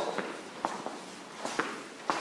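Footsteps walking at an even pace, about two steps a second, each step a short sharp click.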